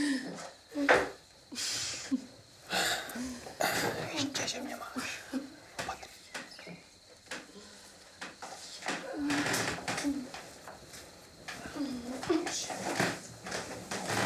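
Quiet speech between two people, with the rustling of a blanket and bedclothes as they climb into a bed and settle under the covers.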